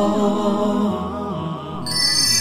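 Intro music of chanted vocals: a voice holds a slow, wavering, ornamented melody. A bright high layer cuts back in sharply near the end.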